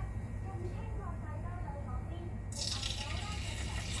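Hot cooking oil in a stainless steel wok starts sizzling suddenly about two and a half seconds in, when a small bit of food drops into it: the oil has reached frying heat. Before that there is only a low steady hum and faint voices.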